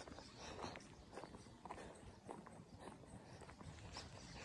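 Faint footsteps of a person walking on a concrete road, about two steps a second.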